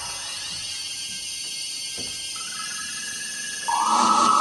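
Electronic music of held, steady tones with a faint hiss. A new high tone enters a little over halfway, and a much louder tone starts shortly before the end.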